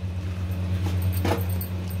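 A silicone spatula stirring thick cooked broken wheat and milk in a non-stick kadhai, with one brief louder sound about a second and a quarter in. A steady low hum underlies it.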